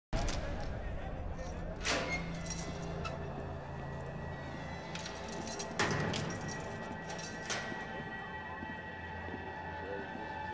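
TV drama soundtrack: a tense music score over a low drone, broken by three sharp metallic clanks about two, six and seven and a half seconds in, each ringing briefly.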